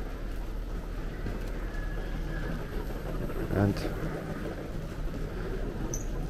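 Ambience of a large, quiet airport terminal hall: a steady low hum and general murmur, with faint footsteps and a short burst of a passer-by's voice about halfway through.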